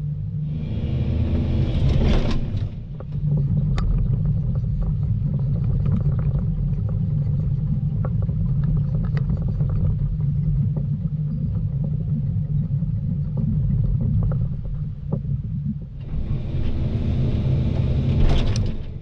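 Volvo EC220 DL excavator's diesel engine running steadily. A rush of higher noise comes about a second in and again near the end, with scattered sharp clicks and snaps between.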